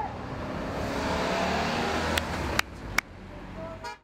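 A car driving past on the road, a steady rush of engine and tyre noise that drops away abruptly about two and a half seconds in. A few sharp clicks follow near the end.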